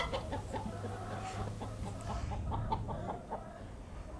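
A flock of hens clucking, with short calls from several birds overlapping throughout.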